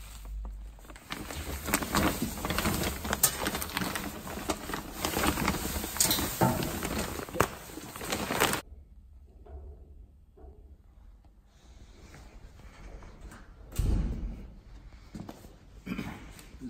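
Crinkling and rustling of a sack and dry wood shavings being handled, full of small crackles, cutting off abruptly about eight and a half seconds in. After that only faint handling noise, with a single thump near the end.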